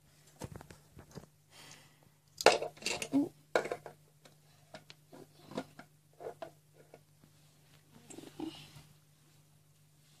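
Plastic toy horses and toy stable parts being handled: irregular clicks and knocks of plastic on plastic, loudest in a cluster about two and a half to four seconds in. A steady low hum runs underneath.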